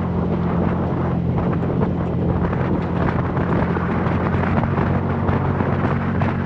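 Vehicle engine running at a steady speed while driving on a sandy dirt road. Wind hits the microphone, and tyre and gravel noise crackle throughout.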